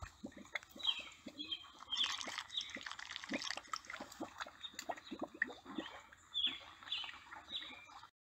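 Quiet wet mud squelching and dripping in many short pops, with birds chirping in the background; clusters of short downward chirps come about a second in, around two seconds and again near the end.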